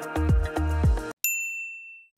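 Electronic background music with a kick drum about every quarter second cuts off abruptly just over a second in. A single bright ding follows and rings out, fading away: a transition chime.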